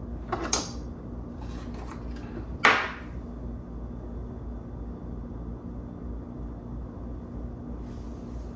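Two brief handling noises as things are set down and moved on a table, the second louder, over a steady low room hum.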